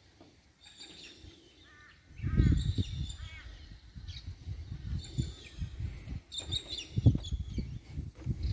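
Wild birds calling, a run of short repeated chirps and some higher thin notes. From about two seconds in, an uneven low rumble on the microphone is louder than the birds.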